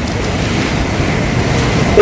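Steady room noise of a lecture hall: an even hiss with a low rumble and no distinct events.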